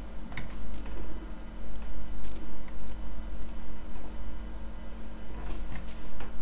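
Light, scattered clicks and taps of a paintbrush against the paint box and paper, over a steady low electrical hum.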